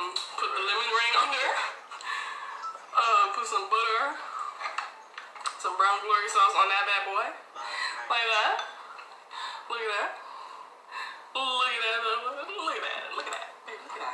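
A person's voice talking on and off throughout, with a few sharp clicks and clinks from a plastic spoon.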